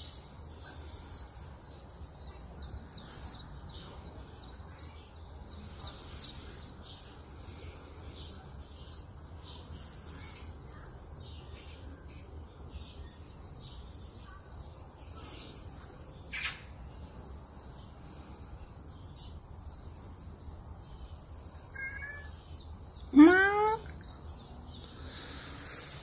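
Small birds chirping and trilling over a steady low hum. About 23 seconds in comes a single loud call that falls steeply in pitch.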